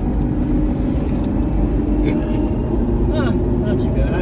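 Cabin noise of the electric-converted Fiat X1/9 driving at speed: a steady rumble of tyres and wind with a faint steady hum and no engine note. A brief voice sounds about three seconds in.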